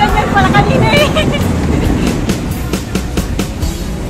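Steel roller coaster train passing overhead: a rumbling roar from the wheels on the track with rapid clattering clicks, fading toward the end. Riders shriek during about the first second.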